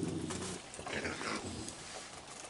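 Raccoons vocalizing while crowded together feeding: a low growl at the start, then a higher-pitched call about a second in.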